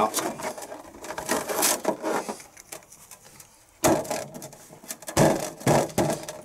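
Latex balloons being handled and knocked about, rubbing and bumping against each other and a plastic goblet, with two louder thuds about four and five seconds in.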